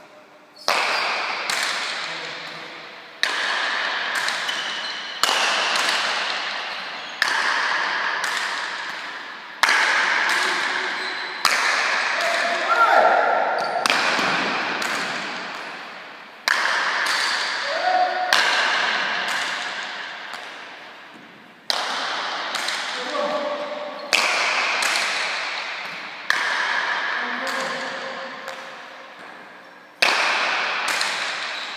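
A leather pelota ball cracks off wooden paletas and the front wall of an indoor left-wall fronton during a long rally. There is a sharp hit every second or two, often in quick pairs of racket stroke and wall strike, and each rings out in the hall's echo.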